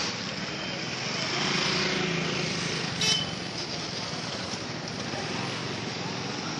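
Outdoor street noise: a steady traffic hum with a brief high-pitched tone, like a horn, about three seconds in.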